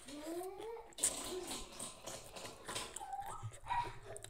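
Chewing and crunching of fresh leafy greens, with a sharp crunch about a second in, and several rising whining calls over it, one climbing through the first second and more near the end.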